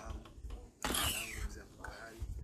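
A man's soft, whispery voice, with a short breathy hiss about a second in, over a low steady hum.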